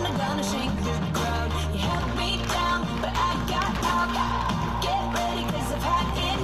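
Pop music with a steady beat and sung vocals.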